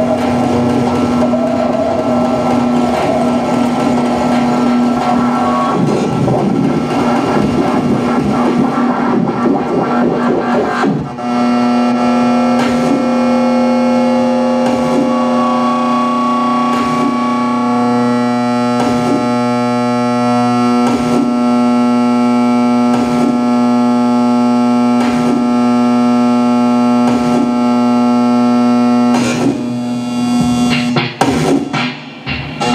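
Live electronic noise music: a dense synthesizer texture over a steady low drone. About eleven seconds in it changes to a held drone of stacked tones, with a regular click about every two seconds.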